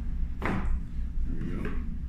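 Cardboard sleeve sliding off a product box, a short scraping slide about half a second in, then lighter cardboard handling near the end as the box parts are set on the table.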